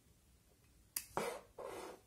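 A USB plug being worked into a plastic USB hub by hand: one sharp click about a second in, then a short rubbing scrape of plastic.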